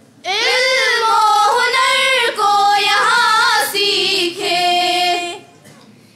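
A group of schoolgirls singing a school song together into microphones, one long sung phrase that starts just after the opening and stops about a second before the end.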